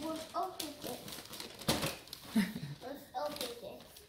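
Indistinct voices of a small child and adults, with a brief rustle of gift wrapping paper about halfway through.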